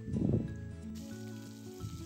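Bay leaf dropped into hot oil for seasoning: a short crackling burst just after the start, then a faint steady sizzle. Background music plays throughout.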